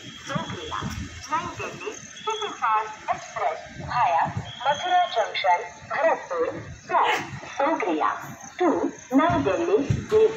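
Several people talking over one another, with no words coming through clearly.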